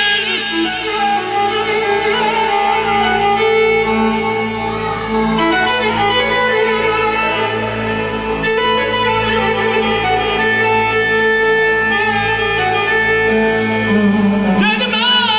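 Live instrumental wedding music between sung verses: a sustained melody line over a steady low bass, with no voice.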